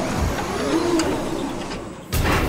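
Mechanical sound-effect sting for an animated logo: a steady whirring with a swooping tone that rises and falls, a sharp click about a second in, then dropping away near the end.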